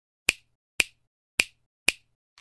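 Four sharp, brief snap-like clicks, about half a second apart: an intro sound effect marking letters as they appear.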